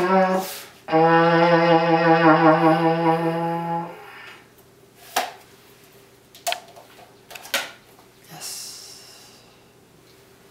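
Homemade trombone built from ABS plastic pipe with a funnel for a bell, blown through a regular trombone mouthpiece: a short note that stops about half a second in, then one long held note of about three seconds with a slight waver, ending about four seconds in. Then a few light knocks.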